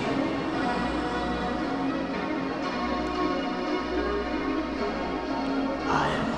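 Bell-like ringing tones, many overlapping in a steady wash.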